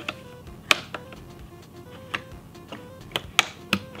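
Sharp, irregular clicks and taps of hard plastic as a Subaru WRX dashboard air vent and its trim are worked loose by hand, about half a dozen in all, over faint background music.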